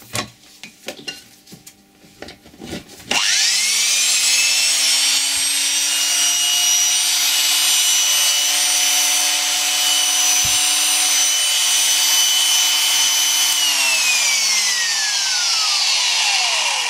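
Vintage electric right-angle drill: a few handling clicks, then it is switched on about three seconds in. Its motor spins up quickly to a steady high whine and runs smoothly for about ten seconds, then winds down with a falling whine after being switched off near the end.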